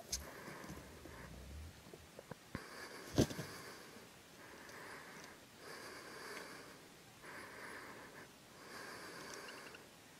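Strutting wild turkey gobbler spitting and drumming: a sharp puff, then a low hum for about a second and a half. A louder sharp click follows about three seconds in, with short stretches of soft hiss throughout.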